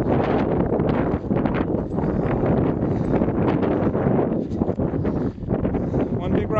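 Wind buffeting the camera's microphone: a loud, low rush that swells and dips in gusts.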